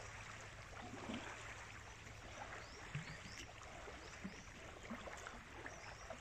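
Small waves lapping on a sandy shoreline, a faint steady wash of water. From about halfway through, short high chirps come every half second or so.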